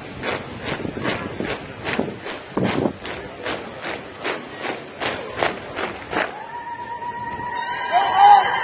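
A drill squad's boots stamping in unison on a parade ground, a sharp regular beat of about two and a half steps a second. The stamping stops about six seconds in, and a long held note then rises in level.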